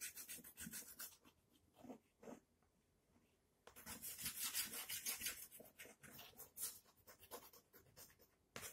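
Stick of chalk rubbed back and forth on a blackboard in quick shading strokes, about five a second. The strokes stop for a couple of seconds about a second in, then start again.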